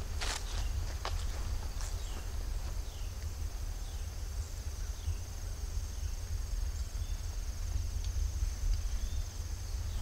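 Outdoor ambience of insects droning steadily at a high pitch, over a low rumble on the microphone and footsteps in grass as the camera-holder walks. A few faint, short, falling chirps come through now and then.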